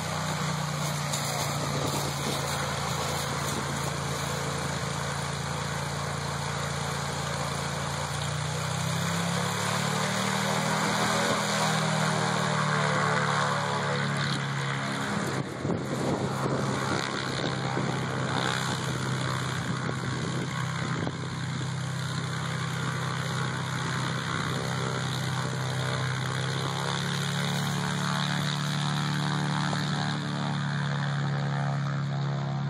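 Small single-engine propeller airplane running steadily as it moves along a grass airstrip. Its engine note rises about nine seconds in, eases back a few seconds later, and rises again near the end.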